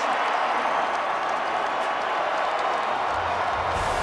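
Steady din of a stadium crowd on a TV broadcast. About three seconds in, a low rumble starts, and a whoosh comes near the end as the broadcast's transition graphic begins.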